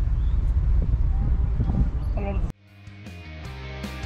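Low, steady outdoor rumble with a brief voice. About two and a half seconds in it cuts off abruptly and background music with guitar starts.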